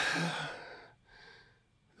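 A man's voice trailing off at the end of a drawn-out "and" into a breath out, then a soft breath in about a second later.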